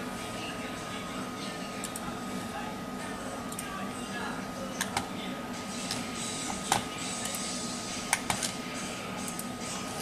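Steady background hiss with a thin steady whine, a few sharp clicks near the middle and later on, and faint indistinct voices.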